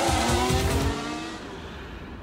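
Formula 1 car engine revving hard, its pitch climbing slightly, then cutting off about a second in and dying away.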